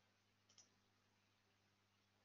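Near silence with a faint low hum, broken about half a second in by a single brief double click.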